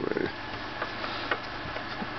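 A few faint clicks and taps from a small plastic sound-box unit being handled in the hand, over a steady low hum.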